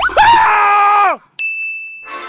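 A loud, high-pitched shout held for about a second that falls away at its end, followed after a brief gap by a sudden steady ding tone.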